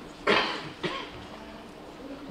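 A person coughing twice: a loud cough about a quarter second in and a weaker one just under a second in.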